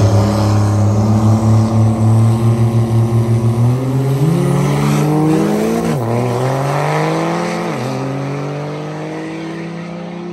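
Diesel drag truck accelerating hard down the strip. After a pulsing low note, the engine pitch climbs, drops at two upshifts about six and eight seconds in, then holds and slowly fades as the truck pulls away.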